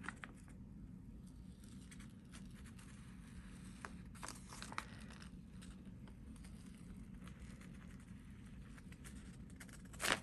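Faint peeling and rustling of paper and a plastic stencil being lifted off a tacky, paint-covered gel printing plate, with a few soft ticks about four and five seconds in.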